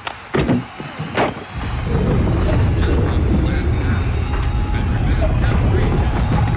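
A few sharp bangs in the first second or so, then a loud, steady, low rumble that holds to the end.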